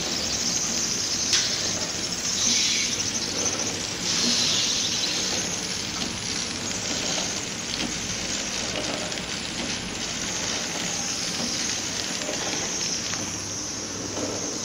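Horizontal flow-wrap packing machine running, feeding film and sealing it around packs: a steady mechanical noise with a strong high hiss.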